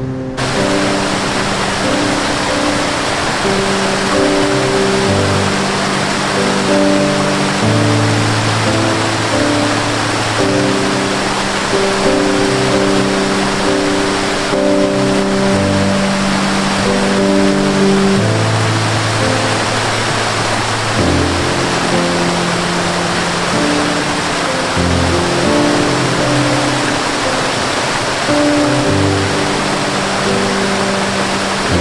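Slow, calm instrumental music of long-held low notes over a steady rush of flowing water from a stream and waterfall. The water noise comes in suddenly at the start and stays even throughout.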